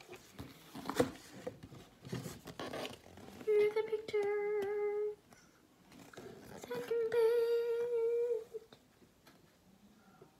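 A girl humming two long held notes, the second slightly longer, with soft clicks of the picture book being handled and turned round in the first few seconds.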